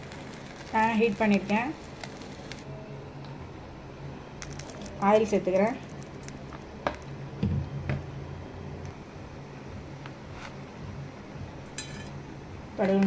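Mostly speech: two short spoken phrases over a steady low hum, with a few faint clicks and a soft low knock in between.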